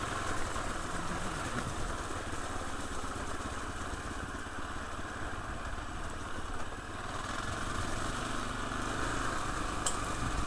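KTM Freeride 350 single-cylinder four-stroke engine running steadily as the bike is ridden along a wet, rutted dirt track.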